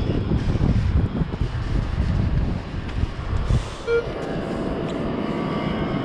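Wind rumbling on the microphone, heaviest in the first four seconds. A short metal-detector beep sounds about four seconds in.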